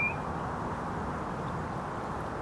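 Steady low background noise of outdoor ambience, with one brief high chirp at the very start.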